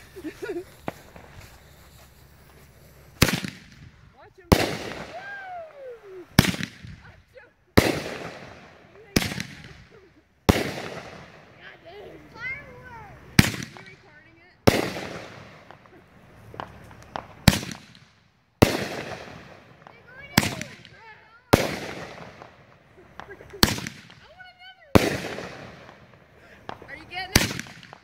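Ground-lit multi-shot firework firing a steady series of sharp bangs, roughly one every second and a bit, starting about three seconds in. Each bang trails off before the next.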